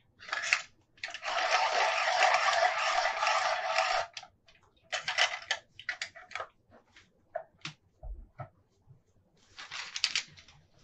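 A coloured pencil being sharpened: about three seconds of continuous grinding, a shorter burst of grinding about five seconds in, then light taps and clicks.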